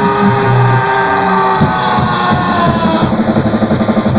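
Live rock band playing: electric guitars hold long notes that sag slightly in pitch, over bass and drums. In the second half the drums take over with a fast run of hits.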